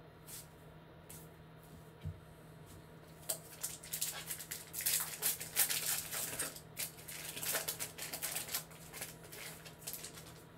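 Trading card pack wrapper crinkling and crackling as it is handled and opened. A dense run of crackles starts about three seconds in and dies down near the end, over a faint steady low hum.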